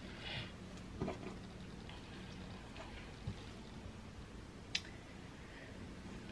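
Faint handling of fabric pieces on a table as they are smoothed and pinned: a soft rustle, then a few small sharp clicks and taps, the sharpest about three-quarters of the way through, over a steady low hum.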